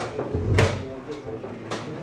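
Chess pieces knocked down on the board in a quick blitz game: a run of sharp wooden knocks, with one heavy thump about half a second in.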